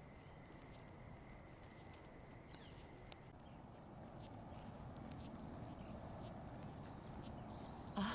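Faint footsteps of someone walking at a steady pace on a concrete path. A thin, steady high tone sounds faintly over the first three seconds, then stops.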